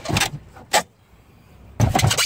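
A few short hard-plastic knocks from the boot floor board and tool tray being lifted and handled in the boot to uncover the spare-tyre well, the loudest near the end.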